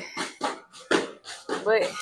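Heavy battle ropes whipped in waves, slapping the gym floor in repeated sharp strokes; a woman's voice speaks briefly near the end.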